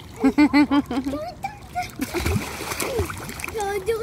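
A child in a swimming pool, first making a quick run of four short vocal sounds, then pool water splashing around him as he moves his arms through it for about a second, with more of his voice near the end.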